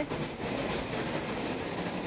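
A steady rushing noise, spread evenly from low to high pitch, lasting about two seconds and ending as talk resumes.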